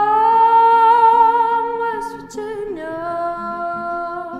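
A woman singing long held notes over steady acoustic guitar strumming. About two seconds in she takes a quick breath, then holds a lower note.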